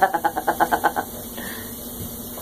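A person laughing in a quick run of short pitched 'ha-ha' pulses, about eight or nine a second, that stops about a second in, over a steady low hum.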